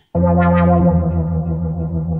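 Synthesizer music from the track playing back: one sustained, harmonically rich synth note starts abruptly just after the start and slowly fades, with no drums under it.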